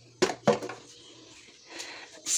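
Dishes clinking as they are handled at a kitchen sink: two sharp knocks near the start, then faint handling noise.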